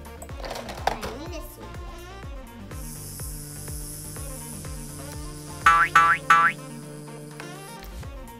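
Background music with a steady beat, with three quick rising cartoon 'boing' sound effects close together about three-quarters of the way through.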